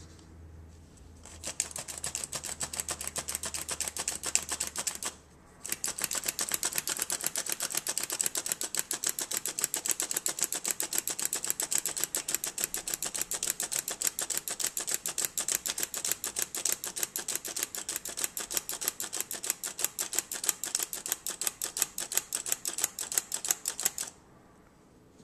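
Hand-squeezed stainless-steel flour sifter being worked over and over to sift flour: a rapid, even run of metallic clicks, several a second, with a brief pause about five seconds in.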